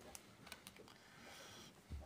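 Near silence: room tone with a few faint, scattered clicks in the first second.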